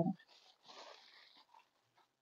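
Faint crinkle of gold metallic foil wrapping paper being pulled and smoothed around a chocolate egg shell, a brief rustle about half a second to a second in, otherwise near silence.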